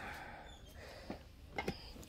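Faint handling noise as small metal wax-melt tins and other items are moved about: a few light clicks and knocks, about a second in and again near the end, over low background hiss.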